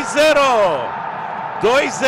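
A football commentator's excited shouting at a goal: a long, drawn-out call falling in pitch, then a second shout starting near the end.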